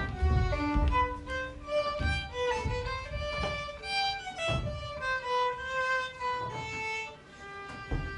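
Solo violin playing an unaccompanied melody one note at a time, with a few dull low thumps underneath in the first half.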